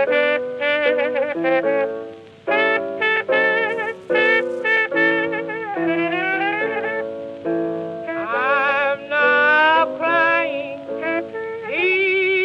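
Instrumental opening of a 1920s blues record: a cornet plays a vibrato-laden melody with slurred bends up and down, over piano accompaniment, in the narrow, thin sound of an old 78.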